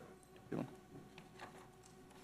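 Quiet room with a brief, faint murmur from a person's voice about half a second in, followed by a few faint ticks.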